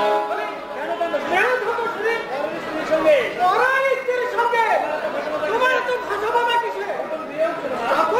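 Speech: actors' stage dialogue carried through a microphone and loudspeakers.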